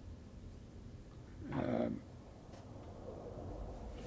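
A man's single hesitant "uh" about one and a half seconds in, over a low, steady room hum.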